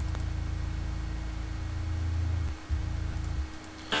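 Sub-bass from FL Studio's 3xOsc synthesizer playing on its own: a long low note, a short break about two and a half seconds in, then a shorter note that stops shortly before the end.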